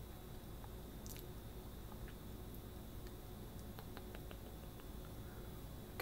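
Quiet room tone: a low steady hum with a few faint, soft clicks scattered through it.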